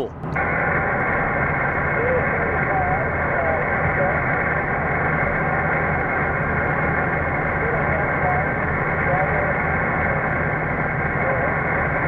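HF mobile transceiver's speaker hissing with band noise, cut off sharply above about 2.5 kHz by the receive filter, with faint, warbling voices of distant single-sideband stations in it: the receiver is open, listening for replies to a call. A steady low rumble from the moving truck lies underneath.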